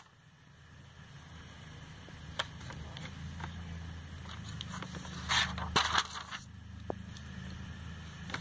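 Glossy catalogue pages being handled and turned: a single tap a couple of seconds in, then a paper rustle and crinkle past the middle as a page is flipped over, over a low steady hum.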